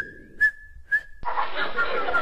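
A steady, high-pitched whistle tone with three short accents about half a second apart, added as a comedy sound effect. It cuts off a little past a second in and gives way to a steady rushing noise.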